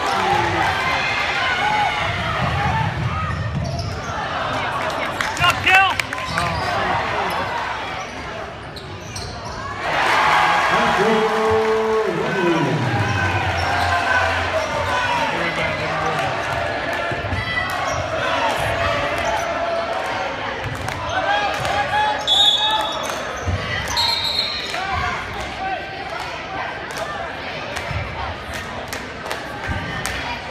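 Basketball bouncing on a hardwood gym floor during a game, under steady crowd chatter and shouts that echo in a large hall. There are short high tones a little over two-thirds of the way through.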